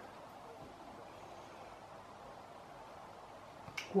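Quiet room tone with no distinct activity, broken by a single short click near the end.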